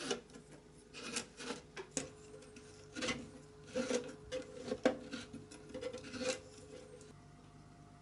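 Scattered light clicks and knocks from a rotary polarity-reversing switch on a control box being turned back and forth. Each reversal sends a pulse that steps an electric railway slave clock's two-coil movement on by a minute.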